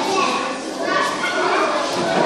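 Many children talking at once in a large classroom hall: a steady babble of overlapping young voices.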